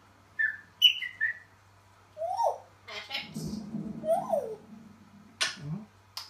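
African grey parrot whistling and calling: a few short falling whistles in the first second and a half, then two rising-and-falling whistles about two seconds apart, with a sharp click near the end.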